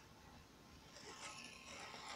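Near silence, with a faint scratchy rustle starting about a second in from the tape measure and pencil being handled.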